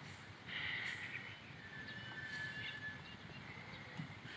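Faint open-air ambience with birds calling: a short burst of high chirping about half a second in, then a thin high whistle held for well over half a second about two seconds in, over a low, even background hum.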